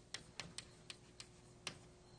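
Faint, irregular clicks, about six in two seconds, over quiet room tone.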